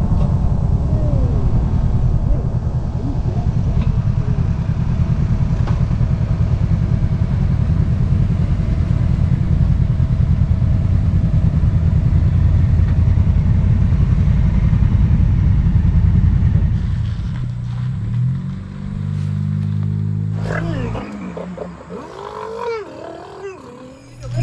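Adventure motorcycle engine running steadily at road speed, heard through a helmet-mounted camera with a haze of wind noise. About 17 seconds in it slows to a lower, steadier idle as the bike pulls up, and it stops a few seconds later.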